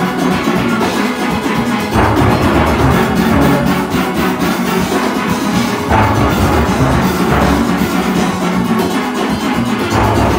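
Steel orchestra playing loudly, heard from among the nine-bass pans: deep bass pan notes struck in quick runs under the ringing higher pans, the bass swelling in phrases of about two seconds.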